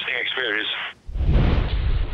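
A voice for about a second, then after a sudden cut a loud, low rumble of wind buffeting an open-sea sailboat's onboard camera microphone.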